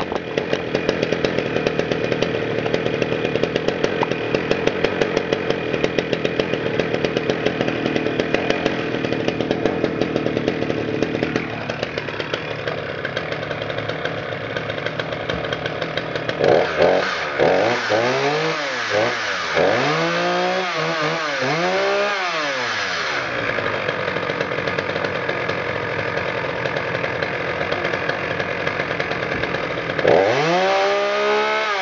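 Poulan Pro 380 two-stroke chainsaw running at idle, then revved up and down about four times a little past the middle, then held at a steady high speed as it is set into a log.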